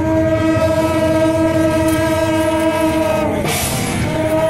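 Several long straight brass processional horns sounding one loud, sustained note together, held for about three and a half seconds before it drops off. A short burst of noise follows near the end.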